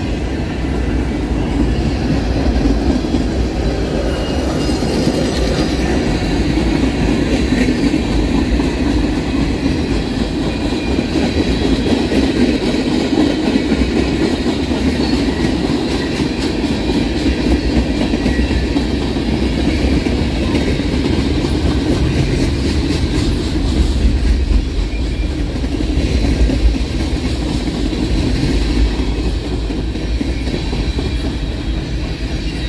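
Freight train cars, covered hoppers and tank cars, rolling past close by with a steady low rumble of steel wheels on rail and a run of rapid wheel clicks in the middle.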